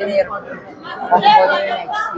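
Only speech: several people talking over one another in a crowded room.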